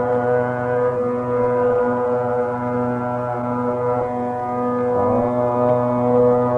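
Carnatic classical music in raga Varali, sung by a vocal group with accompaniment, holding long sustained notes with a short slide in pitch about five seconds in.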